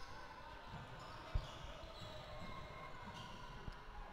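Faint basketball dribbling on a hardwood court, with one louder bounce a little over a second in.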